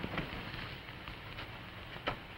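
Steady hiss of an old film soundtrack, with a few faint soft clicks.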